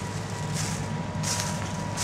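Steady low hum of machinery from a nearby factory, with three short bursts of rustling.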